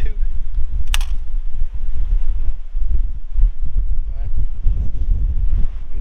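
Wind buffeting the microphone with a constant low rumble, broken by one sharp click about a second in: the Mamiya RB67's shutter firing at 1/60 s.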